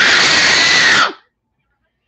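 A child's loud, shrill scream, ending abruptly about a second in.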